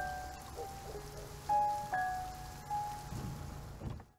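Steady rain falling, with a sparse, soft melody of a few held single notes from the film's score playing over it.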